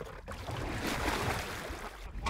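Steady rush of water and wind from a boat moving across the lake, with no distinct engine note.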